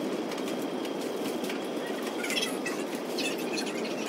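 Shopping bags rustling and groceries being handled as they are unpacked, in short scratchy spells about two seconds in and again after three seconds, over a steady low background noise.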